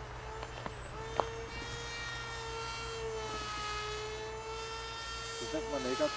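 Brushless electric motor and propeller of a radio-controlled motor glider running steadily: a high whine that wanders slightly in pitch, over low wind rumble. A few clicks come in the first second, and a short voice sounds near the end.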